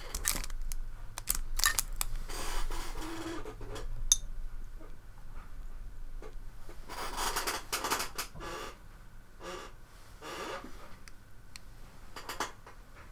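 Handling noise at a painting desk: paintbrushes picked up and moved with light clicks and knocks, and a sleeve rustling close to the microphone in irregular bursts.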